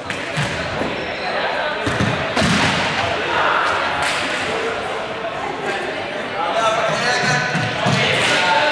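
Balls being kicked and bouncing on a sports-hall floor: several separate thuds that echo around the large hall, over the chatter of a group of young people.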